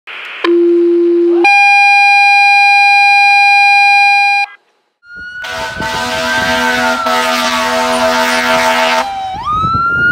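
Two steady electronic intro tones, a low one and then a higher chord, cut off after about four and a half seconds. After a short silence, a fire engine's siren wails: the tone rises, holds, slowly falls, and sweeps up again near the end, over steady lower tones.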